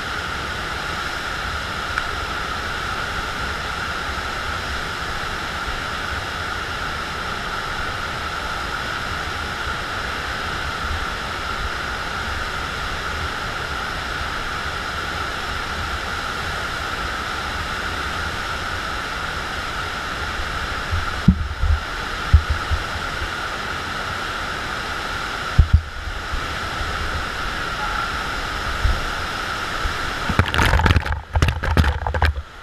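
Steady, loud rush of water from a FlowRider surf machine pumping a thin sheet of water up its padded ride surface. A few brief low thumps break in past the two-thirds mark.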